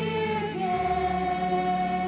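Live worship music: female vocalists singing with a band and strings. A little under a second in, the melody steps to a new note and holds it.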